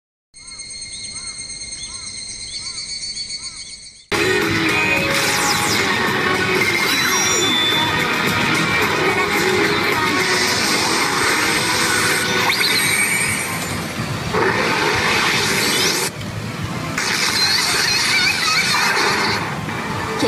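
A pachinko machine's loud music and sound effects over a constant background din. It starts suddenly about four seconds in, after a short quieter electronic intro of steady tones with repeated chirps.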